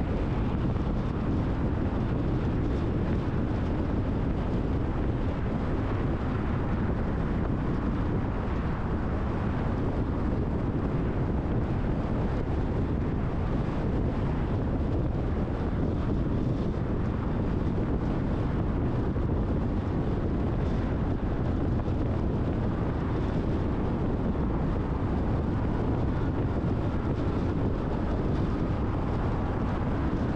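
Steady road noise of a car driving along a multi-lane city highway: an even, low tyre-and-engine rumble with wind, unchanging throughout.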